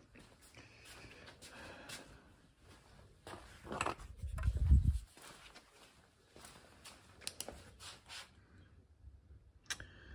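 Faint movement and handling noises as a person fetches a torch, with a low rumbling thump about four seconds in and a few sharp clicks later.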